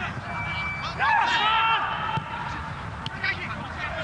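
Footballers' shouts and calls across the pitch, loudest about a second in, over a steady low rumble of stadium ambience.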